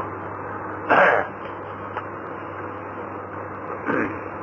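A man clears his throat once, briefly, about a second in, over the steady hiss and low hum of an old lecture tape recording.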